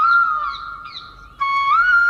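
Background music: a single wavering, flute-like melody line. It fades away and then cuts back in abruptly about a second and a half in.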